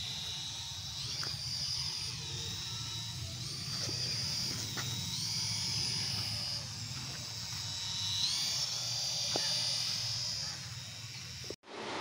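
High-pitched whine of a small toy flying robot's electric propeller motors. The pitch rises and falls every few seconds as the motors speed up and slow down in flight.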